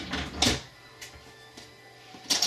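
Sharp clicks from a hand working a gun safe's lock hardware: one loud click about half a second in and a fainter one about a second in.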